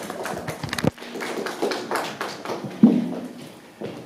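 Scattered taps and knocks, irregular and several a second, with a louder dull thud near the end.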